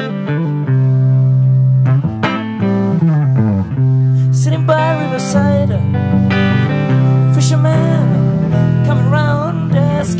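A live rock band plays the slow opening of a song, with electric and acoustic guitars over bass guitar and drums.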